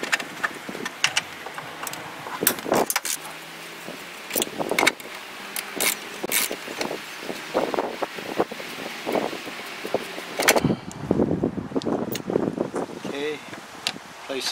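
Irregular metallic clicks and clinks of hand-tool work on a brush-guard support bracket: a socket ratchet on the bracket bolts, and bolts, washers and spacers knocking against the steel bracket.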